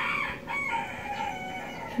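A rooster crowing in the background: one long, drawn-out crow.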